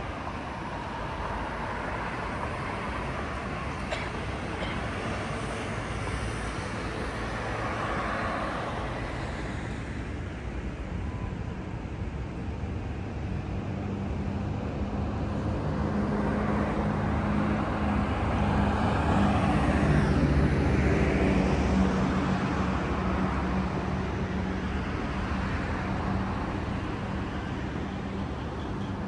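City road traffic: vehicles passing with tyre and engine noise, one swell about eight seconds in and a longer, louder pass in the second half that carries a steady low engine hum.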